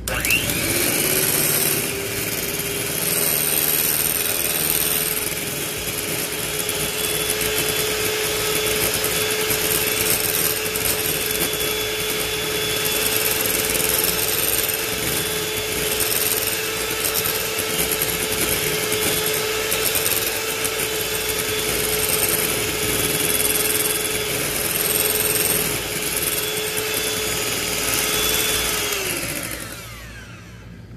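Electric hand mixer running steadily, its beaters whipping cream in a glass bowl. The motor spins up at the start and winds down just before the end.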